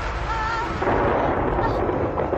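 Loud, dense rumbling noise, with a brief wavering, voice-like wail about half a second in.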